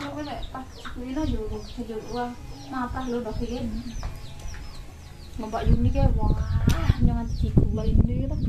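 Chickens clucking in short repeated calls, with many short high chirps running through. About five and a half seconds in, a loud low rumble joins.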